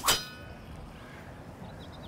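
Golf iron striking the ball on a low stinger shot: one sharp crack at the start with a brief metallic ring after it.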